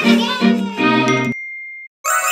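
Short cartoon logo jingle with bright, sparkly chime notes, ending about two-thirds of the way through on one thin high ringing tone that fades away.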